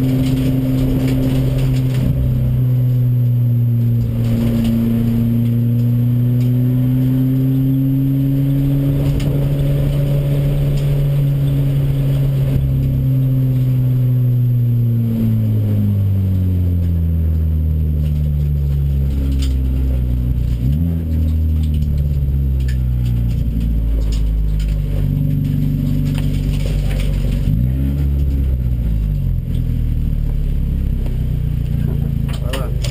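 Audi DTCC race car's engine heard from inside the cockpit, running at high, steady revs for about the first half, then dropping in pitch in stages as the car slows, with two brief rises in revs in the second half.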